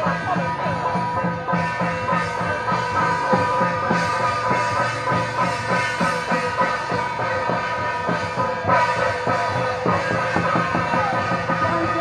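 Temple-procession folk-troupe music: drum and small hand gongs keep a steady beat of about four strokes a second under a sustained melody.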